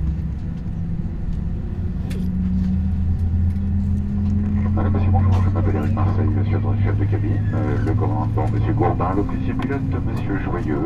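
Airliner cabin rumble: a steady low hum from the jet engines with tones whose pitch creeps slowly upward as the plane taxis, growing a little louder over the first few seconds. From about halfway, indistinct voices talk over it.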